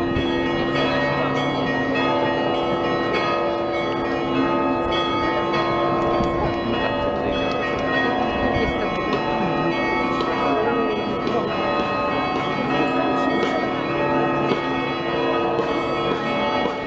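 Bells of the Ivan the Great Bell Tower ringing together in a loud, continuous peal, many overlapping bell tones sounding at once.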